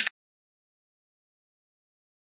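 Dead silence at an edit cut: a man's voice breaks off right at the start, then nothing at all.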